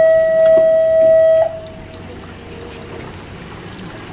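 A loud, steady single-pitched tone that holds for about the first second and a half, then stops abruptly. After it comes only a low wash of water and boat noise.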